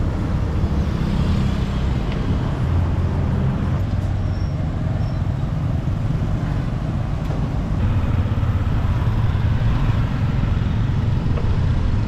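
Road traffic of motorbikes and cars on a city street, heard from a moving bicycle, with a steady low rumble.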